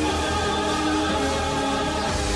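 Orchestral film music with a choir singing held notes.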